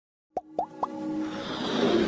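Animated logo intro sting: three quick plop-like blips, each sliding upward in pitch, about a quarter second apart, then music swelling up and growing louder.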